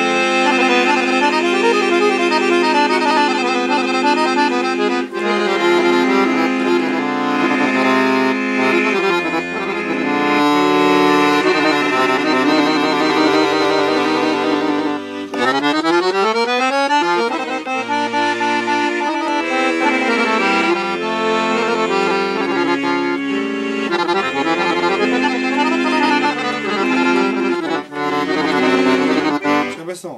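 Piano accordion played solo: a melody in held notes over pulsing bass notes, with a fast run climbing up the keyboard about fifteen seconds in.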